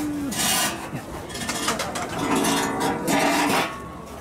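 Knife and fork cutting food on a ceramic plate: several rasping scrapes of metal on the plate.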